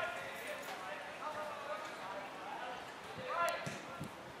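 Shouting voices of players and onlookers across the field. About three and a half seconds in, a single sharp thud of a boot kicking an Australian rules football.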